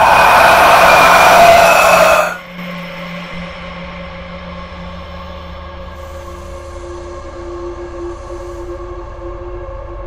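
A loud, noisy sound-effect burst for about two seconds, cutting off sharply, followed by a low, steady, ominous drone of several held tones: horror-film sound design.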